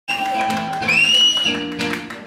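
Loud live dance music: a high melody line of long held notes that slide in pitch over a beat, with sharp hand claps scattered through it.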